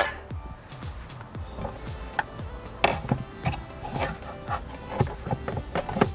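Scattered light clicks and knocks of hands handling and working loose the plastic fuel pump assembly in the fuel tank opening, the sharpest click about three seconds in, over faint background music with a steady high tone.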